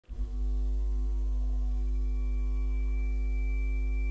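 Ambient drone music: a deep steady hum under several held steady tones, starting suddenly out of silence; a thin high tone joins about halfway through.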